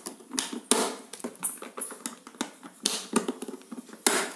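Hard plastic drill case being handled: a string of plastic clicks and knocks, the loudest about three-quarters of a second in and another cluster near three seconds.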